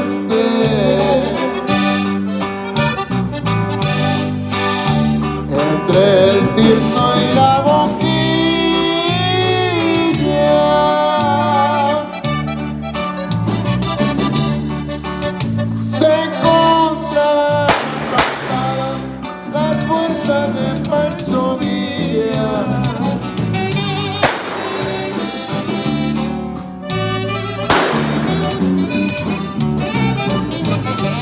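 Norteño conjunto playing a corrido in polka rhythm: an accordion carries the melody over a bajo sexto and bass that keep an even bass-note beat, with a short shouted word about six seconds in.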